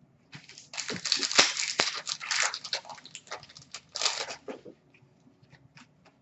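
Trading cards being handled and shuffled by hand: paper rustling with sharp card snaps and clicks for about four seconds, fading to faint ticks near the end.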